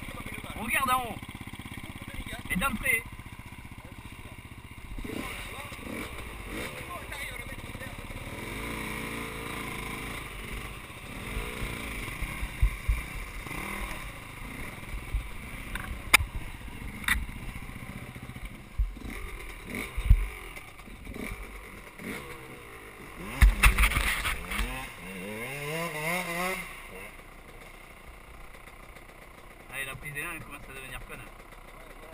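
Enduro motorcycle engines running on a muddy trail, with a few sharp knocks midway. Near the end an engine is revved several times, its pitch rising and falling.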